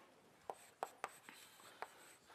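Chalk writing on a blackboard: a few short, sharp taps and scratches spread through a quiet pause.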